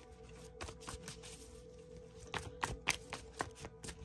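Oracle cards being shuffled and handled by hand: scattered soft flicks and taps, busiest from about two to three and a half seconds in. Faint background music with a steady held tone plays underneath.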